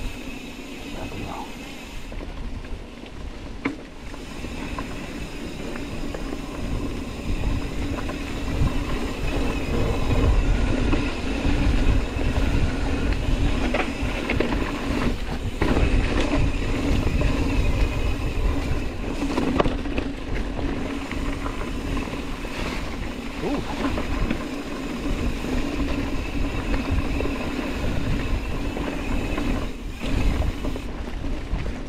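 Mountain bike riding over a leaf-covered dirt trail: a continuous rumble and rattle of tyres and bike over the ground, with scattered clicks and knocks, getting louder about eight seconds in.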